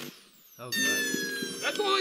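Small handheld turbojet engine cutting out: its roar stops, and after a short gap its turbine whine, several tones together, slowly falls in pitch as the engine spools down. The shutdown follows a bad connection in the engine control cable.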